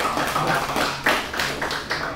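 A group of people clapping their hands: loud, irregular applause.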